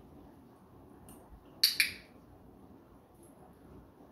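Dog-training box clicker pressed once about a second and a half in, giving a sharp double click-clack. It marks the dog's correct response in the targeting exercise, the signal that a food reward follows.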